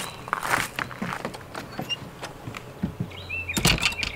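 Glass-paned wooden door opened and then pulled shut, with a burst of rattle early on and a cluster of knocks and latch clicks near the end.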